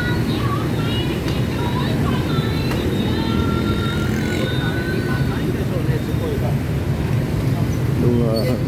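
Steady rumble of dense motorbike and scooter traffic, with voices of passers-by and short higher calls over it.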